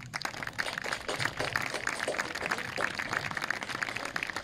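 Applause from a small crowd, many hands clapping in a steady scatter.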